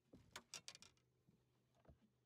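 Near silence, with a few faint short clicks in the first second and one more near the end.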